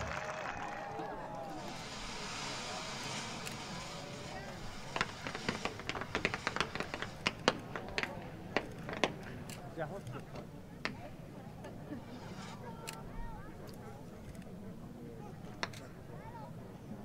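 Faint fireworks crackling: a quick run of sharp pops and crackles from about five to eleven seconds in, then a few scattered pops, over the murmur of distant voices.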